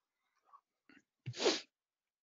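A person sneezing once, about a second and a half in, close to the microphone.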